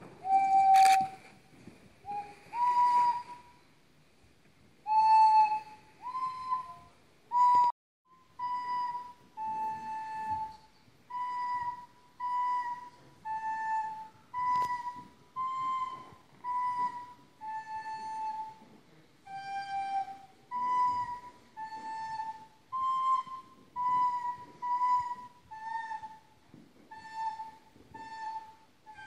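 Children's recorders playing a slow, simple melody one note at a time. The first few notes are louder with pauses between them; from about 8 s in the notes come evenly, about one a second, and somewhat softer.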